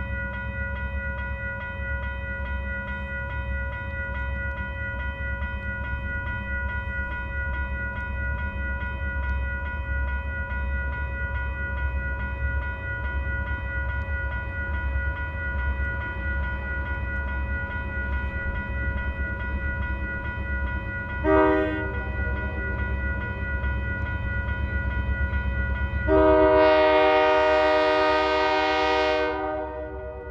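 Diesel freight locomotive approaching, a steady low engine rumble with a steady high whine over it. Its air horn gives a brief toot about two-thirds of the way in, then one long blast of about three and a half seconds near the end.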